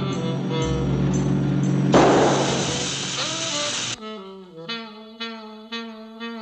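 Cartoon score music. About two seconds in a loud rushing noise sets in and lasts about two seconds, then gives way to a single held, wavering note with a few light ticks.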